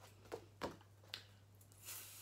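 Faint, brief clicks and rustles of a paper flashcard being handled and picked up, three short ones followed by a softer rustle near the end, over a steady low electrical hum.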